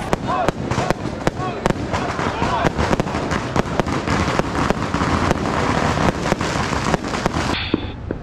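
Strings of firecrackers popping in rapid, irregular cracks, with voices of the parade crowd in between. The popping stops abruptly near the end.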